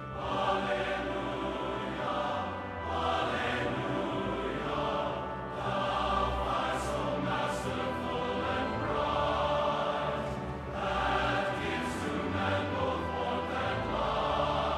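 Choral music: a choir singing slow, sustained phrases over long-held low notes.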